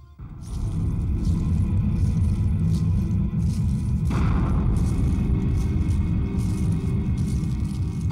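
Dramatic background score: a deep, steady rumble of low percussion comes in abruptly just under half a second in, and a brighter layer joins it about four seconds in, marking a warrior's entrance.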